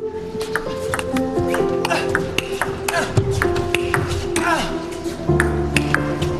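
Table tennis rally: the celluloid ball clicking off bats and table about three times a second, in a long exchange of high defensive returns, over background music.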